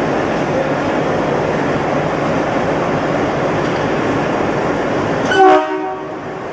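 A WDM-3A diesel locomotive's ALCO engine rumbling steadily as the locomotive moves slowly in to couple, then a short, loud horn blast near the end.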